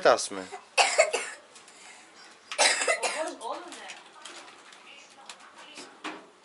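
A person coughing: two short, sharp coughs about two seconds apart, with a little low speech after the second.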